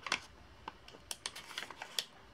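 A string of light, irregular clicks and taps, about a dozen in two seconds, the loudest near the end.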